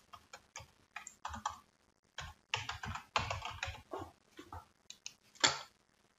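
Typing on a computer keyboard: a run of separate, irregular keystrokes as a short phrase is typed, with one louder keystroke near the end.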